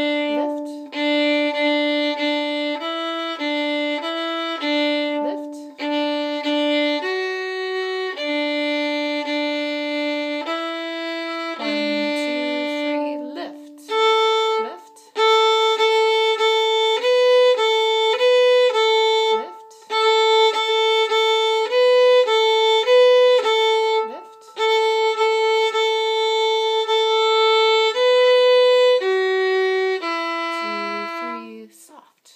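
Solo violin playing the second violin part of a march: a single melodic line of separate, evenly bowed notes, many repeated, lower in the first half and moving higher from about halfway. It is broken by several short gaps where the bow is lifted and reset.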